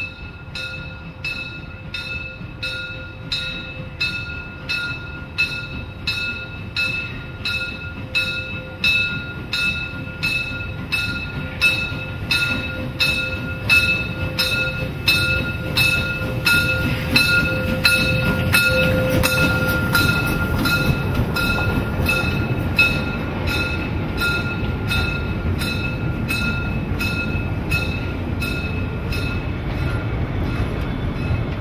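Warning bell of a 900 mm narrow-gauge steam locomotive (99 2321-0) ringing evenly, a little more than once a second, as the train runs along a street. Under it the low rumble of the locomotive and coaches grows louder as the train draws level.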